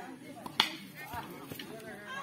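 A single sharp crack about half a second in as a cricket bat strikes the ball, with onlookers' voices around it.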